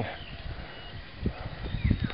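Horse hooves thudding dully on a dirt trail, a few steps landing in the second half.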